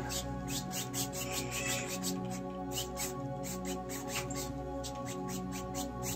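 Soft background music with steady held tones, under short scratchy strokes of a paintbrush scrubbing paint across a stretched canvas, a few strokes a second.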